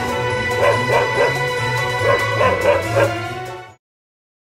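Great Pyrenees puppy yipping over background music: seven short, high yelps in two bursts, three then four. The music and yelps cut off suddenly just before the end.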